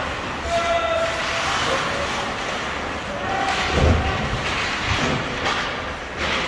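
Ice hockey play heard in a rink: a steady noisy wash of skates and sticks on the ice. A short horn-like tone sounds about half a second in, and a heavy thud, the loudest sound, comes about four seconds in, with a lighter one about a second later.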